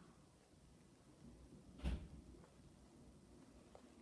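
Near silence: room tone, with one soft knock about two seconds in.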